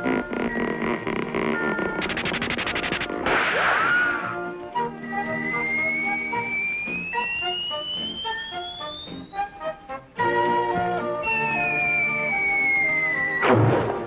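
Cartoon orchestral score with comic sound effects: a long whistling glide rises steadily in pitch over about five seconds, the music breaks off and restarts, a shorter whistle falls in pitch, and a sudden crash comes near the end.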